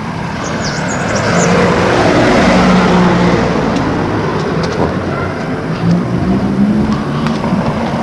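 Street traffic: a motor vehicle's engine and tyre noise, swelling to its loudest about two to three seconds in and then easing off slowly.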